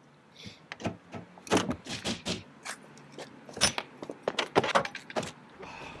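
Wire coat hanger being worked into a car door's window gap: an irregular run of metallic clicks, scrapes and rattles against the door and glass that lasts about five seconds.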